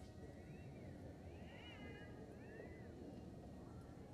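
Near silence: a low, steady room rumble. Between about half a second and three seconds in come a few faint, high calls that rise and fall in pitch.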